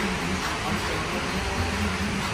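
Steady background noise with a low hum, without distinct events, in an amusement-ride area while the ride cars stand still.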